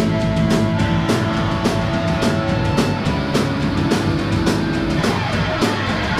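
Live oi/streetpunk band playing an instrumental passage without singing: distorted electric guitar chords and bass over drums with a steady beat of cymbal crashes.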